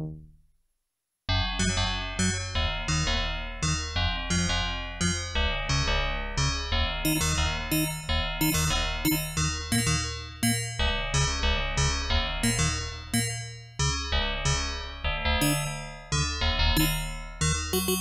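Yamaha DX7 IID FM synthesizer playing a patch with no processing. A note dies away, then about a second in a busy passage starts: keyboard notes with sharp attacks and quick decays, several a second, over sustained bass notes.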